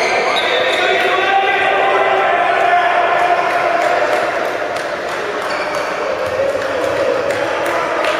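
A handball bouncing on a sports-hall floor while players dribble and pass, with indistinct shouting from players and onlookers across the hall.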